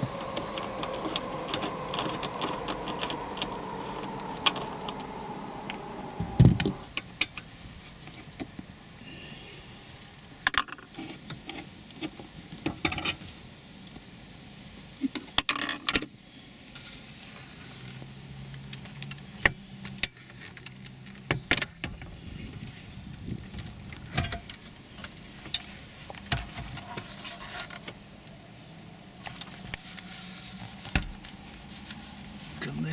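A tool whirs with a slowly falling pitch for about six seconds while the mounting bolts of a Toyota RAV4's stereo head unit are backed out, ending in a knock. Then come scattered sharp clicks and knocks of plastic and metal as the head unit is worked loose and lifted out of the dash.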